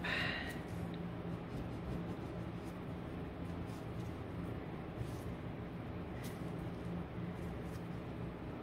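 A few faint light taps and rubs of thin wooden easel pieces being pressed and adjusted by hand on a table, over a steady low hum of room noise.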